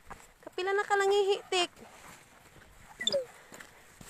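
A person's drawn-out wordless vocal call, held steady for about a second and wavering at the end, followed about three seconds in by a short rising-and-falling vocal sound.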